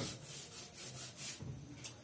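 Chalk being wiped off a blackboard: several faint rubbing strokes against the board.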